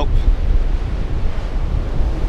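Strong gusting wind buffeting the camera microphone with a heavy low rumble, over the steady wash of storm surf breaking on the beach.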